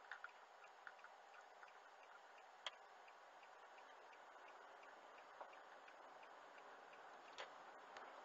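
Car's turn-signal indicator ticking at about three ticks a second over faint road noise inside the cabin, the ticking dying away partway through; a few sharp single clicks stand out above it.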